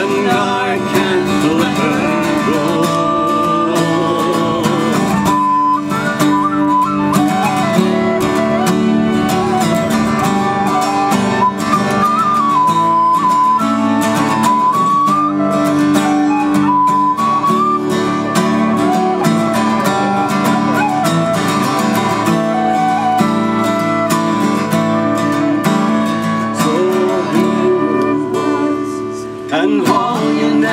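Instrumental break in a folk song: a tin whistle plays an ornamented melody over acoustic guitar accompaniment.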